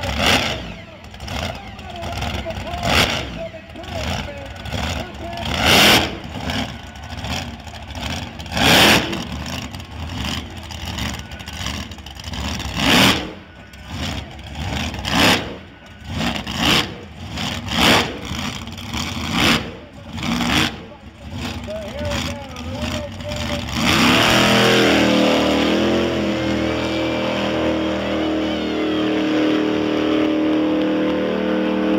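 Jet engine on a drag-racing school bus running, with a string of loud sudden bursts, about one every second or two, as it blasts flames out the back. About 24 s in this gives way to a steady, louder roar as the bus goes down the track at full power.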